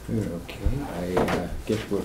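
Indistinct off-microphone talk in a meeting room, with a short knock about two-thirds of a second in.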